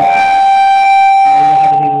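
A loud, steady, high-pitched whistle, typical of feedback from a public-address microphone. It holds one pitch for about a second and a half, then fades out under the preacher's voice.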